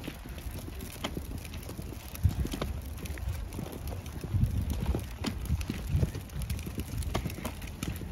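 Stroller being pushed along a concrete sidewalk: wheels rolling with low, uneven rumbling, a scattering of sharp clicks and the pusher's footsteps.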